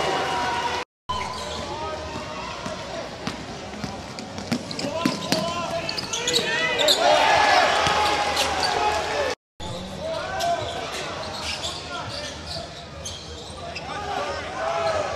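Court sound of a basketball game in a hall: the ball bouncing on the floor, with players' and crowd voices and short sharp ticks. The sound drops out twice, briefly, about a second in and again past the middle.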